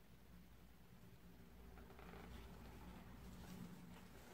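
Near silence: room tone, with faint soft handling noise.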